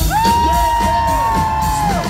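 Live R&B band playing, with one long high note held over the music for nearly two seconds, rising slightly, and the audience cheering and whooping.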